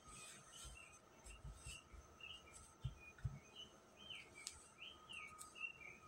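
Near silence, with a bird chirping faintly and repeatedly in the background. A couple of soft thumps come about three seconds in.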